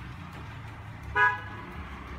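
A single short vehicle horn toot a little over a second in, over a steady low hum.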